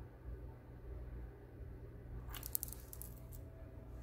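Faint handling noise: a short rattle of small clicks about two seconds in, over a low steady hum.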